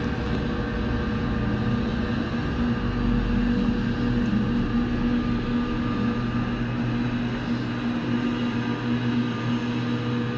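Steady mechanical hum of an eight-person pulse gondola's haul rope and terminal machinery, heard from inside the cabin as it moves slowly into the bottom station.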